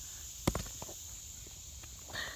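Steady high-pitched drone of insects, with one sharp knock about half a second in and a couple of faint ticks after it.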